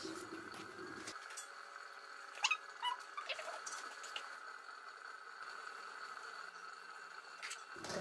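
Quiet room tone with a faint steady high-pitched hum, and a few soft clicks a little after two seconds in.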